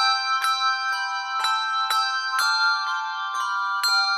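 Music of struck bell tones: a steady run of high notes, about two a second, each ringing on under the next, with no low notes beneath.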